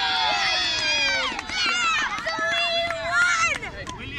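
Several children's high voices shouting and calling out across an open playing field, overlapping, with a few drawn-out yells.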